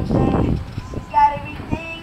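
Pop song playing: a high, boyish male voice singing over the backing track. A short burst of rushing noise comes right at the start.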